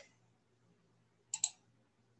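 A single computer mouse click about a second and a half in, heard as a quick pair of sharp clicks as the button is pressed and released, over a faint steady low hum.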